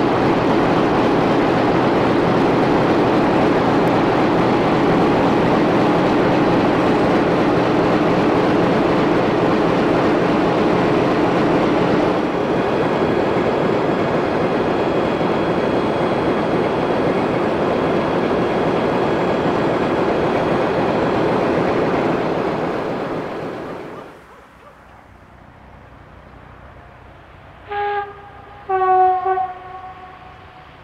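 Classic diesel locomotive's engine running hard as it starts away with a passenger train: a loud steady drone that eases slightly about halfway and then fades away. Near the end a train horn sounds twice, a short blast and then a longer one.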